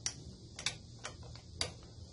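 Sharp metallic clicks, about five at uneven intervals, from a wrench and socket extension being worked on a cylinder head bolt of a Briggs and Stratton V-twin engine.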